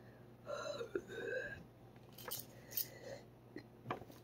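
Faint breathy vocal sounds from a person in pain from the heat of a Paqui One Chip Challenge chip: two short murmurs in the first half, followed by a few small clicks.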